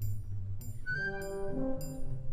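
Orchestra playing the opening of the piece: a low sustained bass and a light high tick about every 0.6 s, with a melody of held notes coming in about a second in and falling in pitch.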